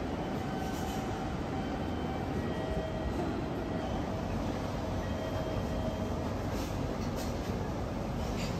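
Steady station noise of a commuter crowd walking through a large concourse, with a train running through the station and faint thin squeals from its wheels coming and going.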